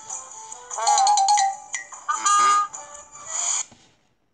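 Animated story app soundtrack: background music with three loud bursts of wavering, gliding cartoon sound effects over it, then the sound cuts off suddenly just before the end.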